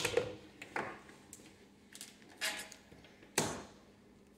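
Handling clicks and knocks of a mains plug being pulled out of a Seaward PAT tester's test socket and its cable moved about: a few separate sharp knocks, the loudest about three and a half seconds in, over a faint steady hum.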